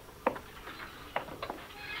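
A person's voice making a few short, faint sounds, about five brief stabs spread over two seconds.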